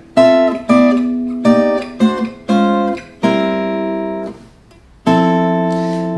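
Acoustic guitar played fingerstyle: a chord-solo progression of six chords in quick succession, then a short pause and a final chord left to ring.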